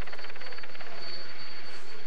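Helicopter engine and rotor noise with a fast, even pulsing.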